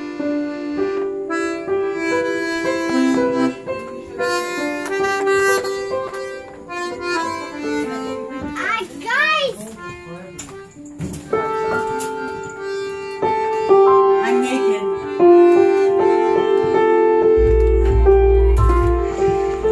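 Piano accordion playing a tune in long held notes over sustained chords. A voice with gliding pitch comes in briefly about halfway through, and a low rumble starts just before the end.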